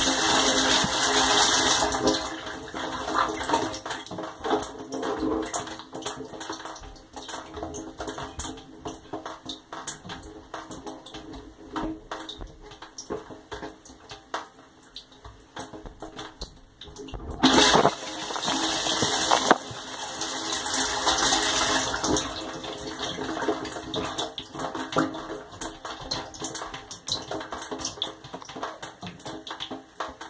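Water spraying and splashing against the inside of a running dishwasher's tub, heard from inside the machine, with a steady hum underneath. The spray is heavy at first, eases about two seconds in, and surges again for a couple of seconds a little past halfway.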